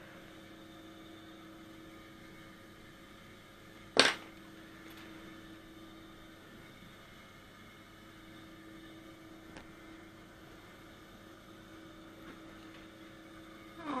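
Steady low electrical hum from equipment in a small room, with one sharp click about four seconds in and a faint tick later.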